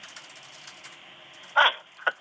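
Faint steady hiss of a phone line, then about one and a half seconds in a single short vocal sound comes through the phone, falling in pitch.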